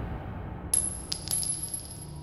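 A spent brass pistol cartridge casing dropping onto a concrete floor, bouncing three times in quick succession with a high metallic ringing that fades away.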